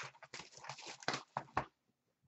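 Cardboard hobby box of trading cards handled and set down in a plastic bin: a quick run of light knocks and scrapes that stops shortly before the end.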